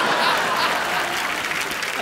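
Studio audience applauding and laughing, a dense clatter of many hands clapping that eases off slightly toward the end.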